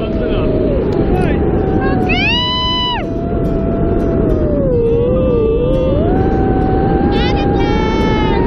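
Steady wind rumbling on the helmet camera's microphone under an open parachute, with voices whooping and squealing in long gliding calls, one rising and falling clearly about two seconds in.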